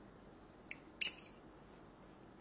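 Two short, sharp clicks about a third of a second apart, the second louder and followed by a brief rattle, over quiet room tone.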